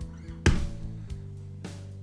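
Bass guitar notes ringing, with a new note plucked about half a second in and another shortly before the end.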